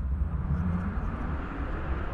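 A steady low rumble, with a faint low tone swelling briefly about half a second in.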